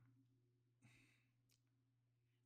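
Near silence: faint room tone with a steady low hum, and one faint breath about a second in.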